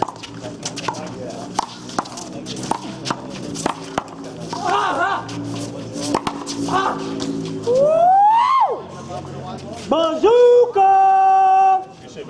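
Handball rally: the rubber ball smacks sharply and irregularly off bare hands and the concrete wall. About eight seconds in comes a loud rising shout, and near the end a long held yell, the loudest sounds.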